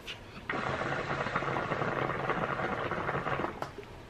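A long drag on a hookah: smoke bubbling through the water bowl in a steady rattly gurgle for about three seconds, then stopping.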